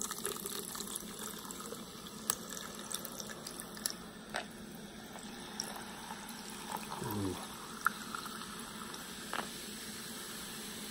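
Carbonated energy drink poured in a steady stream from a can over ice into a glass, fizzing as foam builds. Scattered sharp clicks sound through the pour.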